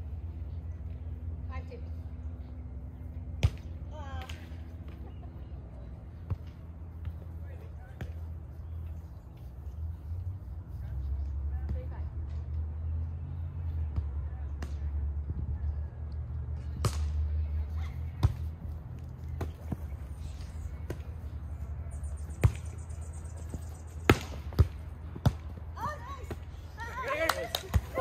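Volleyball being played on grass: sharp slaps of hands and forearms on the ball every few seconds, coming quicker near the end of the rally, over a low steady rumble. Voices rise just before the end.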